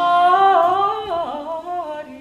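An operatic singing voice alone, holding long notes that rise slightly and then slide down through lower notes in the second half, with no instrument under it, fading near the end.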